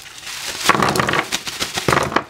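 Plastic bubble wrap crinkling and crackling as a bag of paint tubes is handled and tipped out onto a wooden table, with a sharper knock near the end.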